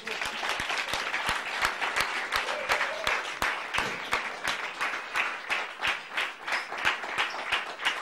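Audience applauding, breaking out at once and going on steadily, with many individual claps standing out.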